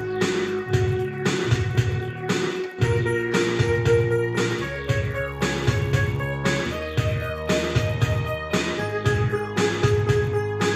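Yamaha PSR-520 arranger keyboard playing music with a steady drum rhythm and bass accompaniment under sustained chords, which change about every two seconds.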